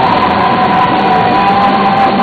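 Live heavy metal band playing through loud amplification, with one long held high note carried over the full band.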